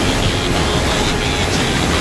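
Waterfall: a loud, steady rush of white water pouring over rock ledges, with background music underneath.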